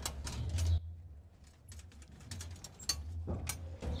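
Light metallic clicks and scrapes of steel tie wire being wrapped and twisted around rebar to make a cross tie, over a low steady hum.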